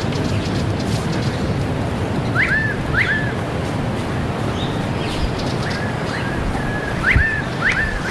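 Steady rumble of wind on the microphone outdoors, with a bird calling in pairs of quick upswept chirps, once about a third of the way in and again near the end.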